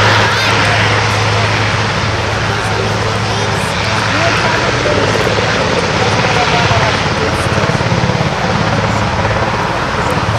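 Helicopter running with a steady low hum of engine and rotor, with people talking over it.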